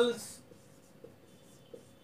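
Marker writing on a whiteboard: faint strokes with a few light taps as the letters are formed, after a man's spoken word that ends just after the start.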